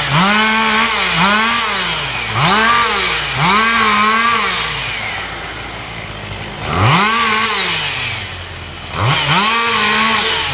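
Chainsaw revved in repeated bursts, its engine speed climbing and falling about once a second. It drops back to a low idle about five seconds in and again just before the end, then revs up again.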